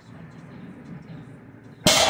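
A loaded deadlift barbell set down on the floor, its plates hitting the mat with one loud metallic clank near the end that rings on briefly.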